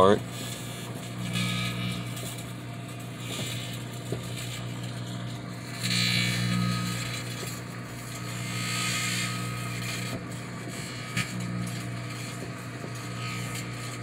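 Microwave oven running: a steady electrical hum with its fan, while an aluminium-wire and aluminium/chromium-oxide charge in a shot glass burns and arcs inside. A few sharp crackles and two swells of hiss come through over the hum.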